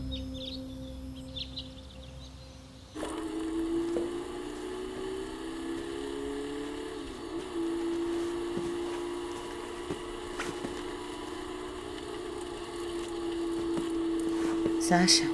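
Soft sustained music with a few high bird-like chirps, cut off sharply about three seconds in by a steady droning hum. The hum slowly rises in pitch for a few seconds and then holds, over a background hiss with faint clicks.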